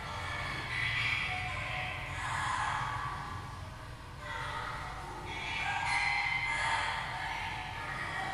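Recording of trained parrots speaking words of the extinct Maypure language, played over loudspeakers in a hall: several short vocal phrases a second or two apart, over a steady low hum.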